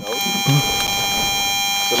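A steady electronic buzzing whine made of several fixed high tones, starting suddenly right at the start and holding unchanged, like electrical interference on the recording.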